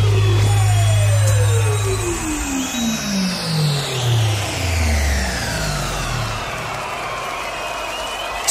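Electronic dance music transition: a loud steady synth bass holds, then cuts off about two seconds in. A run of synth notes steps steadily downward in pitch while a high sweep glides down with it, a falling wind-down effect.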